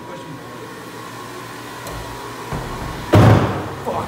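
A low steady hum, then a sudden loud rushing knock about three seconds in that fades over half a second.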